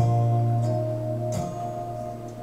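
Acoustic guitar strummed in a live set: a chord struck at the start rings on, with a second, softer strum about one and a half seconds in.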